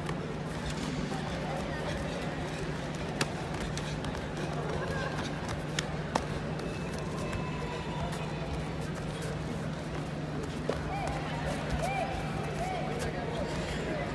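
Sports-hall ambience during a full-contact karate bout: background voices and shouts over a steady low hum, with a few sharp slaps of strikes landing, about three seconds in, around six seconds and near eleven seconds.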